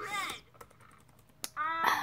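A few light clicks of typing on a computer keyboard, one click sharper than the rest, between snatches of a girl's speech.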